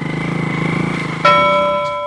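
A motorcycle engine running steadily. About a second in, a single bell-like chime strikes and keeps ringing over it.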